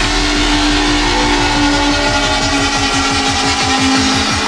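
Drum and bass mix: a dense, rapidly pulsing bass line, made of quick repeated downward sweeps about eight times a second, over a deep low rumble, with a held synth note above it.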